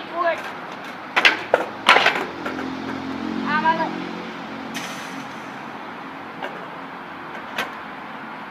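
Skateboard clattering on a concrete driveway: several sharp clacks of the deck and wheels striking the ground between one and two seconds in, then a low rumble of wheels rolling. A short wordless vocal sound comes around the middle, and two lighter knocks near the end.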